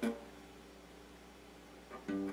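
Electric guitar: one picked note at the very start that rings on and slowly fades, over a faint low hum.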